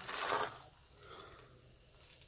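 Night insects such as crickets keep up a steady, high, thin drone. A short rustling noise is heard in the first half second.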